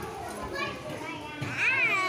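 Young children chattering and calling out together. About one and a half seconds in, one child's high-pitched call rises and falls.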